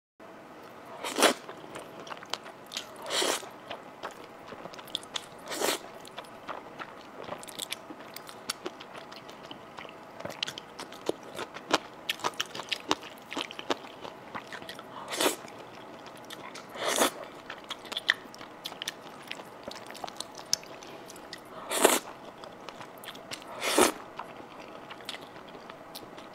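Close-miked eating sounds: mixed noodles slurped about seven times, each a short noisy burst, with a steady run of small wet chewing clicks in between.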